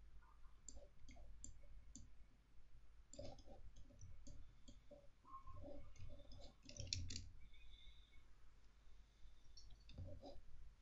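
Computer mouse clicking: scattered single clicks, with a quick run of clicks about seven seconds in, over a faint low hum.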